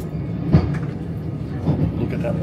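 Steady low hum and rumble of a passenger railway carriage heard from inside, with a sharp knock about half a second in and a lighter one near the end.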